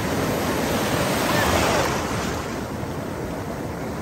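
Ocean surf breaking and washing through shallow water, a wave rushing in that grows loudest about a second and a half in and then eases off.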